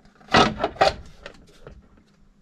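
A hand rubbing and bumping against the plastic housing of a Victron Lynx Shunt, with two louder scrapes about half a second apart in the first second and a few softer ones after.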